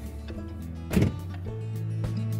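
Background music with steady low notes that change pitch about a second and a half in, and a single sharp knock about a second in.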